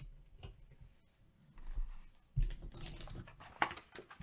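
Irregular clicking and tapping with some rustling: objects being handled on a desk, busiest in the second half.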